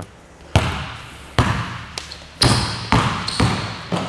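A basketball being dribbled on a hardwood gym floor: five bounces at uneven spacing, each echoing in the hall.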